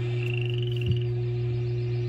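Marsh sound effects with frogs croaking and a short rising chirp in the first second, played back through computer speakers over a steady low electrical hum. There is one sharp click near the middle.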